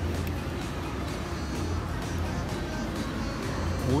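Background music over the steady low hum of a busy food court.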